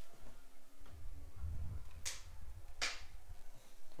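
Handling noise as a phone and its add-on microphone are moved about: a low rumble with two sharp clicks a little under a second apart, midway through.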